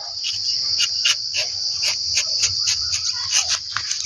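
Steady, high-pitched chorus of insects, with a quick run of short scraping strokes, about three or four a second, from a rubber-tapping knife shaving a thin strip of bark along the tapping cut of a rubber tree.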